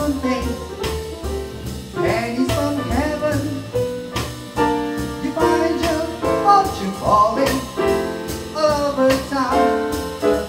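Small live jazz combo of piano, upright bass and drums playing a swing tune, with a singer's voice carrying the melody over it.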